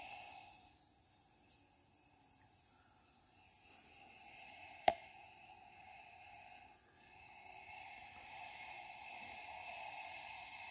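Pepsi Max Cherry fizzing with a soft, steady hiss, its carbonation set off by a sugar-free Polo mint dropped into it. A single sharp click about five seconds in.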